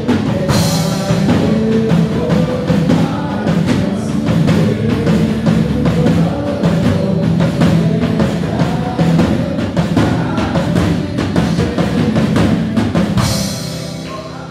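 Live worship band playing, with an acoustic drum kit driving the beat on bass drum and snare under singing voices. Cymbal crashes ring out about half a second in and again near the end.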